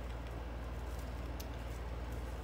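Quiet room tone: a low steady hum, with one faint click a little past halfway.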